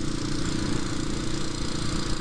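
Motorcycle engine running at a steady cruise with an even drone, over the rush of road and wind noise while riding.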